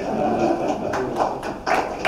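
Faint murmur of voices in a large hall, with a couple of light taps, one about a second in and one near the end.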